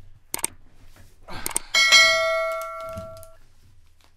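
Subscribe-button sound effects: a couple of quick mouse clicks, a short swish, then a single notification-bell ding about two seconds in that rings out and fades over more than a second.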